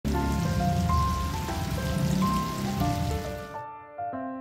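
Battered pieces deep-frying in a wide pan of hot oil, a steady bubbling sizzle that cuts off suddenly near the end, over background music of held keyboard notes.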